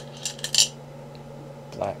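Go stones clinking against one another as a hand rummages in a bowl of stones and picks one out: a few quick, bright clinks within the first second.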